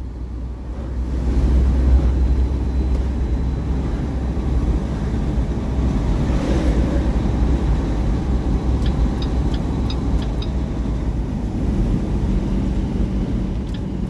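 Semi truck driving at road speed, heard from inside the cab: a steady low engine and road rumble, with a few faint high ticks about nine to ten seconds in.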